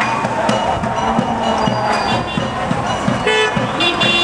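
Drums played in a street march, keeping a steady beat, with voices around them. A horn toots briefly a little after three seconds in and again near the end.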